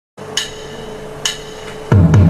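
Two sharp metallic strikes about a second apart, each with a short bright ring. Right at the end a louder, low-pitched sustained sound of singing or music begins.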